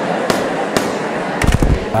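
Crackling shortwave radio static with scattered sharp clicks, and a low thump about one and a half seconds in.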